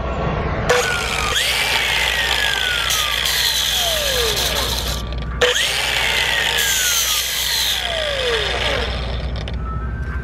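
Angle grinder with a grinding and polishing flap disc, run twice with a short break between. Each run starts with a quick rise in pitch, then a long falling whine over a steady grinding noise as a duplicate key is held against the disc to grind off a small ridge.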